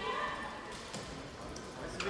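Handball match in a sports hall: players' voices calling out on court near the start, and a few light knocks from the ball or feet on the hall floor, all with the echo of a large hall.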